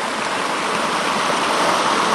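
A small cascading mountain stream running over rocks: a steady rush of water.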